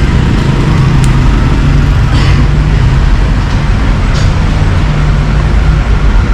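Loud, steady road traffic noise with a constant low engine drone, as of a heavy vehicle running close by.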